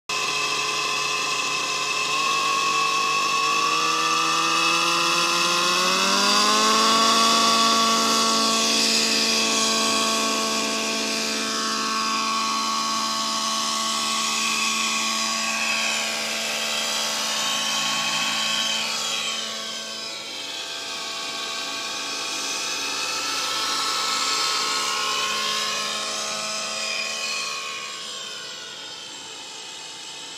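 Align T-Rex 700N nitro RC helicopter's glow engine and rotor spooling up, the whine rising in pitch over the first several seconds, then running at steady head speed as it lifts off and flies. From about halfway on the pitch swings up and down as it passes back and forth, and the sound fades somewhat near the end as it climbs away.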